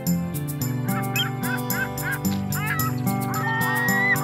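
Background music with a steady beat and held chords, with birds giving repeated short calls over it from about a second in.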